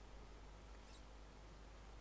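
Near silence: faint room hiss and low hum, with one faint short click about a second in.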